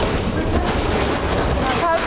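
An earthquake shaking a TV studio kitchen set: a steady low rumble with rattling throughout. A brief voice cry comes near the end.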